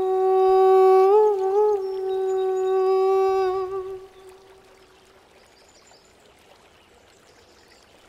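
A solo voice holds one long sung note, wavering briefly about a second in and fading out near four seconds, the end of a line of an Assamese song. After it comes the faint steady rush of a rocky mountain stream.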